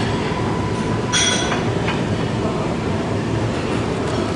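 Steady rumbling din of a busy buffet dining room, with a brief metallic clatter of serving ware about a second in.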